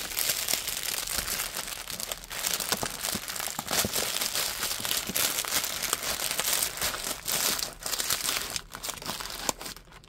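Small plastic zip-top bags of diamond painting drills crinkling and rustling as they are handled and packed into the kit's box, a continuous irregular crackle that dies away near the end.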